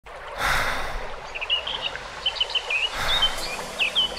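Small birds chirping over a steady wash of water-like ambient noise, with two brief swells of rushing noise about half a second and three seconds in.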